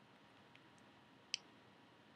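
A Pacific parrotlet gives one short, sharp click about a second and a half in, with a fainter one earlier, against near silence.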